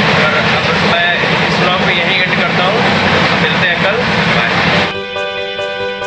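Very loud running noise of a moving passenger train heard from beside the carriage door, with a steady low hum and a voice partly buried in it. About five seconds in it cuts off to background music.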